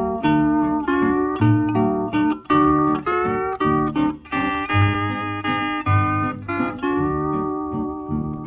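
Instrumental break of a 1950 country duet record: a string lead plays a melody of held, slightly gliding notes over rhythm guitar and a steady bass, without singing.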